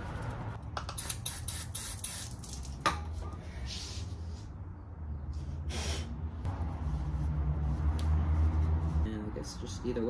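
A few light clicks and clinks of metal parts being handled in the first three seconds. Then come two short hisses, the louder one about six seconds in, over a steady low hum.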